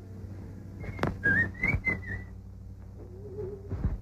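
A person whistling a few quick, wavering notes about a second in, with sharp knocks alongside and a thud near the end. It comes from an old film soundtrack, with a steady low hum under it.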